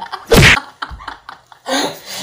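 A short, very loud shouted outburst from a person, lasting about a quarter of a second, a third of a second in. A brief vocal sound follows near the end.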